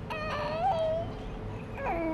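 A child's high-pitched whining cry, one drawn-out wail about a second long, then a second, lower falling one starting near the end.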